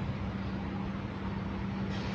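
A steady low hum over a constant hiss of background noise.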